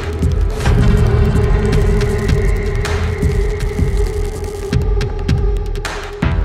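Dark, eerie logo-sting sound design: a steady humming drone with a repeating low, throbbing pulse like a heartbeat beneath it.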